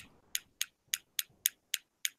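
Six sharp computer clicks about a quarter-second apart, skipping quickly ahead through presentation slides.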